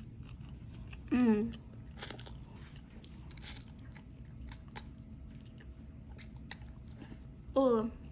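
A person eating noodles close to the microphone: slurping and chewing, with many small wet mouth clicks and smacks. A short hummed "mm" of enjoyment, falling in pitch, comes about a second in and again near the end, and these are the loudest sounds.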